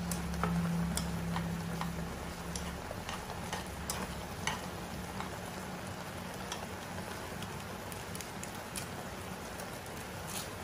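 Instant noodles and sauce sizzling in a pan on a gas stove as chopsticks stir them, with a steady hiss and irregular sharp clicks and pops. A low hum sounds for the first two seconds.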